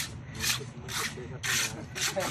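Rough scraping strokes through wet cement mortar, about two a second, as the mortar is worked and spread by hand.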